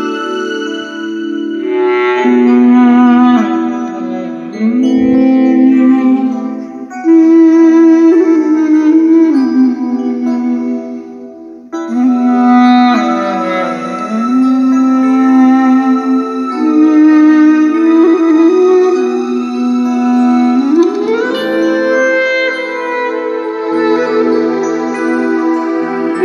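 Music from a CD played through the small built-in speakers of a Sony CFD-S03CP portable boombox: a melody with sliding pitches and little bass. The music drops away briefly just before halfway.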